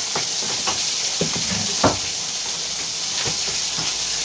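Water rushing steadily out of a dismantled stop valve in a house water line, a continuous hiss: the supply cannot be shut off, so it is left draining. A couple of light knocks of parts being handled, about one and two seconds in.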